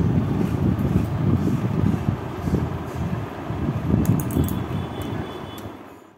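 A low, uneven rumble with no speech, fading out near the end.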